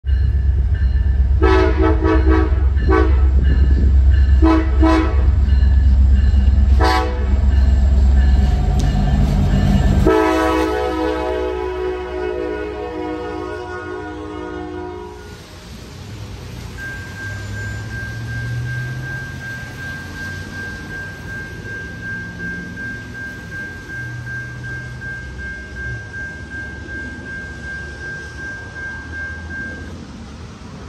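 Diesel locomotive air horn sounding a chord: four short blasts over a heavy engine rumble, then one long blast lasting about five seconds. After that it goes quieter, with a steady high-pitched tone and a low rumble.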